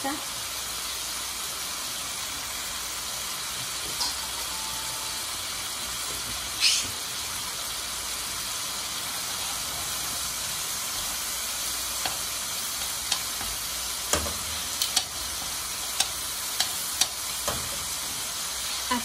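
Maguey flowers, onion and chiles frying in oil with a spoonful of asiento (pork lard drippings) in a stainless steel pan, a steady sizzle. Metal utensils clink and scrape against the pan now and then, loudest about a third of the way in, with a run of sharp clicks in the second half.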